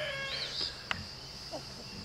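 Faint farmyard birds in a poultry pen: a short, high chirp about half a second in and a single sharp click about a second in, over a steady faint high-pitched background hum.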